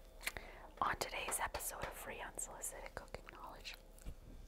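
A woman whispering softly, with small lip-smacking kisses in between.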